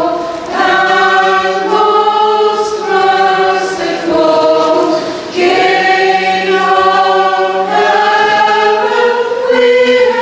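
Church choir singing a slow liturgical hymn in long held notes, over a steady low note held beneath. The singing breaks briefly between phrases, about half a second in, near four seconds and just past five seconds.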